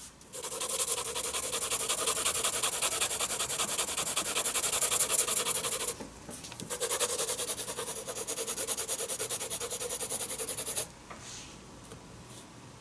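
Graphite pencil shading on sketchbook paper: rapid back-and-forth scribbling strokes in two long bouts, with a short break about six seconds in.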